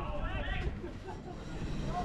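Voices calling out on an outdoor football pitch, clearest in the first half-second and then dropping to faint background talk over a low, steady rumble.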